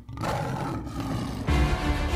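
Music from a television ident with a lion's roar sound effect over it. About one and a half seconds in, the music jumps louder with a heavy bass.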